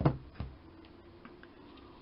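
Two short, sharp clicks about half a second apart as small objects are handled on a tabletop, the first the louder, followed by a few faint ticks over a faint steady hum.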